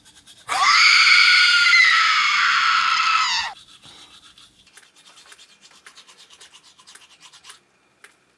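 A person's long, loud, high-pitched yell, held for about three seconds, then the scratchy back-and-forth strokes of a toothbrush scrubbing teeth.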